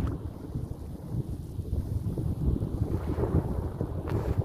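Wind buffeting the phone's microphone: an uneven, gusty low rumble.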